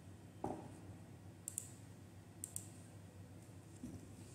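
Faint clicks of a computer mouse button: two quick double clicks, each a press and release, about a second apart. A dull thump comes about half a second in, louder than the clicks, and a smaller knock near the end.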